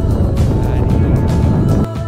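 Wind rumbling hard on an action camera's microphone in paraglider flight, under background music with steady held notes. The rumble cuts out briefly just before the end.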